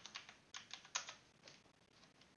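Faint computer keyboard keystrokes: about half a dozen separate taps, most in the first second and a last one about a second and a half in.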